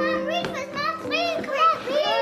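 Children's excited high-pitched voices calling out, with no clear words, over soft background music with held notes.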